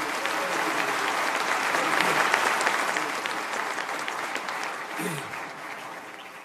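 Large seated audience applauding, a dense patter of many hands clapping that swells a little and then tapers off toward the end.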